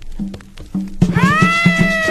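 Opening of a cumbia with accordion conjunto: a steady drum beat with a low bass tone. About halfway in, one long wailing note comes in that rises at its start and bends down as it fades.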